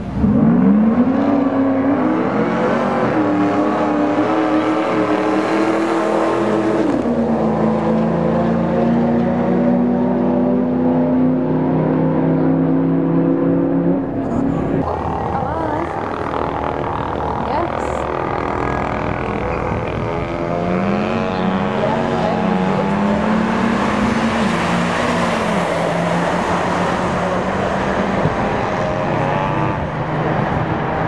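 Car engines revving at a drag strip start line: a quick rev-up at the start, then engines held at high revs. After a cut about halfway through, an engine is blipped up and down several times.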